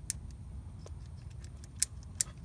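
Kobalt ratcheting adjustable wrench clicking as its jaws are worked by hand: a few short, sharp metal clicks, the loudest near the end.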